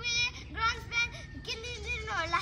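Young children singing the chant of a hand-clapping game in high voices, in short held notes.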